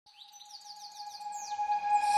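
Quick series of bird-like chirps, each a short falling note, over one steady held tone, growing steadily louder as it fades in.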